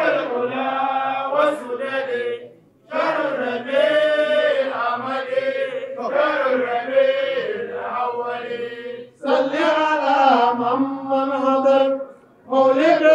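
A man's voice chanting an Arabic devotional qasida unaccompanied. The lines are long and melodic, broken twice by short pauses for breath.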